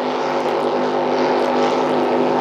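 Steady drone of racing powerboats' 4.2-litre Holden 253 V8 engines running hard at race speed, with an even hum.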